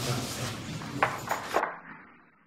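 Three short, sharp knocks about a second in, over the low room noise of a restoration work site, as the sound fades out.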